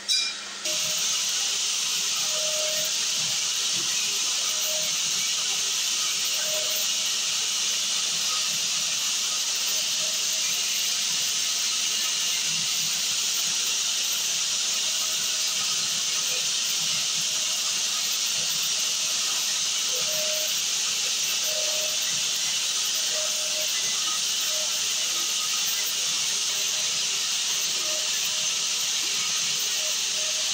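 Hydraulic idiyappam press running: a loud, even hiss that starts suddenly about half a second in and holds at one level, with faint short tones now and then.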